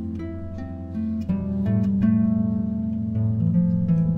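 Harp duet: two concert harps playing plucked melody notes over held bass notes, growing louder about a second in.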